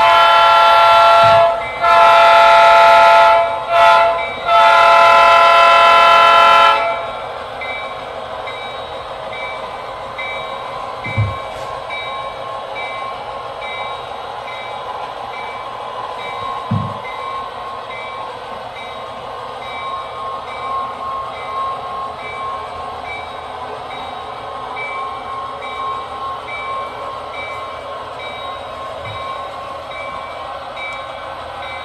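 A sound-equipped model steam locomotive blowing its whistle in four blasts, long, long, short, long: the grade-crossing signal. After that its running sound carries on more quietly, with a few soft knocks.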